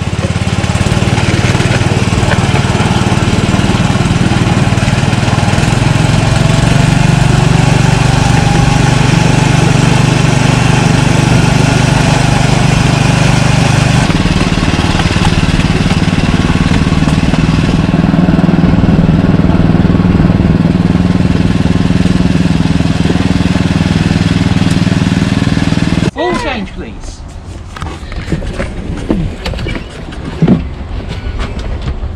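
Small engine of a ride-on miniature railway locomotive running steadily as the train carries its passengers along, then cutting out about four seconds before the end as the train comes to a stop.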